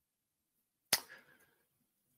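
Near silence broken by a single sharp click about a second in, with a faint brief tail after it.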